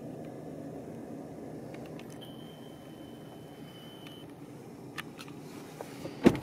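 Low, steady hum inside a parked car's cabin, with a few faint clicks and a thin high tone held for about two seconds in the middle.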